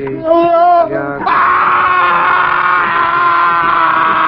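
A man screaming in pain as he is hoisted up by ropes. Short wavering cries come first, then just over a second in a long, loud scream that is held steady.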